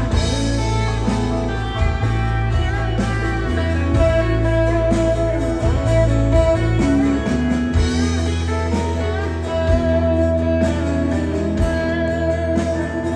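Live worship band playing an instrumental passage with no singing: acoustic guitars over a steady bass line and held chords.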